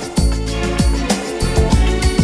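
Instrumental passage of a 1990s French pop ballad, with the band backing playing a steady beat and no vocal.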